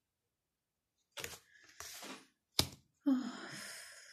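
Tarot cards being handled: short rustles of cards and hands, a sharp click about two and a half seconds in, and a longer rustle near the end, after a second of dead silence.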